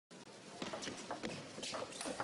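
Table tennis rally: the hollow knocks of the celluloid ball striking rackets and bouncing on the table, about five or six quick hits in the second half, over a low hall background.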